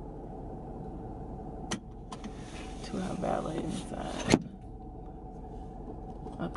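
Steady low rumble inside a car's cabin. A click comes just before 2 s. After it a rustling, hissy stretch runs with a faint voice in it, and it ends in a sharp click, the loudest sound, a little past 4 s.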